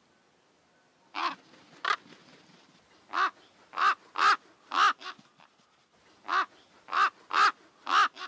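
A crow cawing about ten times in three groups, two caws, then four, then four, each caw short.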